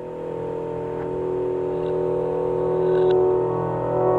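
Solo acoustic piano sounding a sustained low chord that grows steadily louder.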